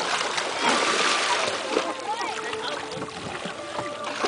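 Water splashing as a swimmer kicks at the surface, loudest in the first two seconds, with faint voices calling in the background.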